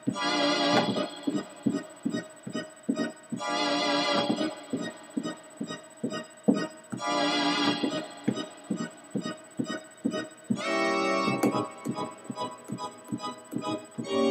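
Electronic keyboard on an organ voice playing a slow piece in A-flat minor. Held chords sound about every three and a half seconds, each lasting a second or so, with short, repeated notes at about three a second in between.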